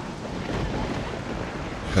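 Steady rushing noise of road traffic, with no distinct tones, horns or knocks.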